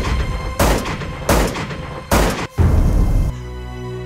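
A revolver fired in rapid succession, one shot about every two-thirds of a second, over dramatic orchestral music. The shots stop about three seconds in and the music carries on.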